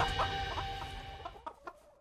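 Chickens clucking in a handful of short calls while jingly music fades out underneath.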